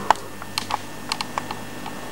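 A string of light, irregular clicks and taps, about eight in two seconds with the sharpest near the start, over a faint steady hum.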